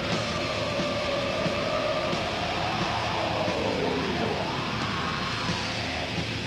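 Black metal band playing live: distorted electric guitars, bass and drums in a dense wall of sound, with a melodic line over it that dips in pitch about four seconds in.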